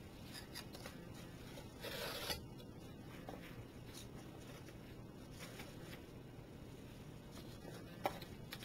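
Canvas straps of a wooden plant press being pulled through their metal buckles to cinch the press shut: a short rasp of webbing sliding through a buckle about two seconds in, with faint scrapes and taps of handling around it.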